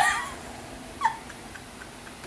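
A woman's high-pitched squeal of laughter at the start, then a short falling squeak about a second in.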